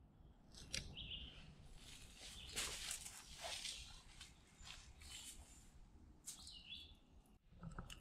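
Faint woodland birdsong: short chirps about a second in and again around six seconds, over quiet scattered rustling and crackling from the forest floor.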